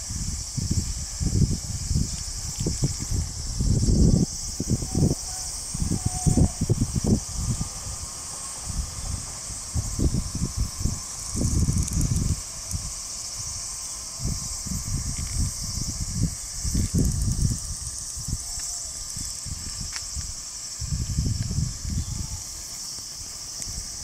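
Wind buffeting the microphone in irregular gusts, over a steady high-pitched insect hiss.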